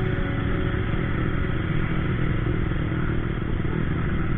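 Steady motorcycle riding noise picked up by a camera on the bike: engine rumble mixed with wind and road noise, with other motorcycles running alongside.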